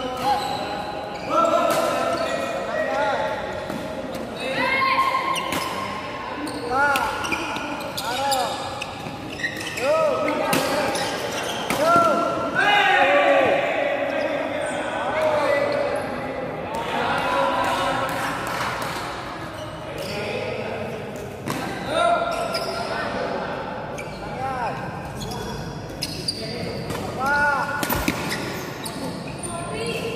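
Badminton players' court shoes squeaking in short chirps on the hall floor, mixed with sharp racket strikes on the shuttlecock, ringing a little in a large hall. Voices are heard in the background.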